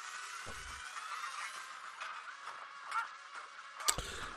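Thin, tinny soundtrack of an animated action episode playing back: music mixed with sound effects, with a rising whine and a few light hits, and a short low thump about half a second in.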